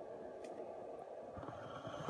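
Quiet room tone with a faint click about half a second in and a few soft ticks near the end.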